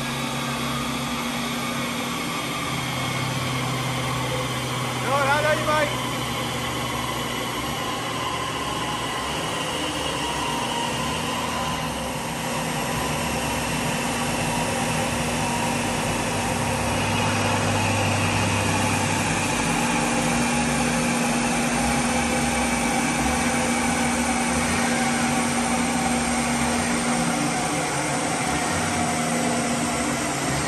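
Small engine of a Suzuki Carry kei pickup idling steadily on a rolling road dyno, under a constant fan-like hum, getting a little louder about two-thirds of the way through.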